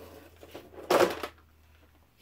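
A tap and die set in a moulded case being pulled out and lifted, with a few light knocks and one short, loud rattling clatter about a second in.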